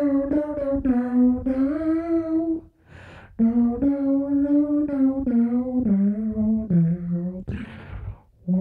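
A man humming a wordless melody into a handheld microphone in long held notes, with a short breath about three seconds in. In the second phrase the notes step down in pitch toward the end.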